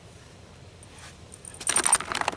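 Camera being handled at close range: a quick run of clicks and rattles that starts about one and a half seconds in, after a faint steady background.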